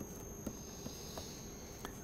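Quiet room tone with a steady high-pitched electrical whine, and a few faint light ticks of a stylus tapping on a tablet screen while writing.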